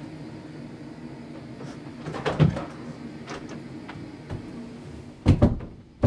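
Steady low hum with a cluster of knocks about two seconds in and a louder pair of thumps near the end, household knocks of the cupboard-or-door kind.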